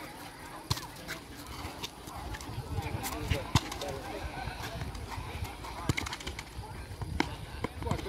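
Outdoor futsal play on an asphalt court: a series of sharp knocks of the ball being kicked and shoes striking the surface, with players and spectators calling out in the background.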